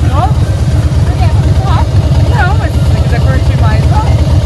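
Motorcycle engine idling with a steady low pulse close by, unchanged throughout, with voices and laughter over it.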